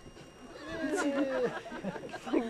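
Several unintelligible voices shouting and calling out over one another, louder from about halfway through, with one long drawn-out call that falls in pitch.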